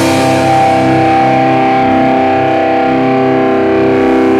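Rock band music: distorted electric guitar holding sustained, ringing chords, with no drum hits until the kit comes back in just after.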